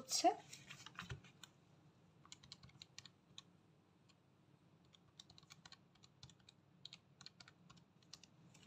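Keys being pressed on a Casio fx-991EX scientific calculator: a quick, uneven run of small clicks as a division is keyed in. Before the clicks there is a light knock about a second in as the calculator is set down.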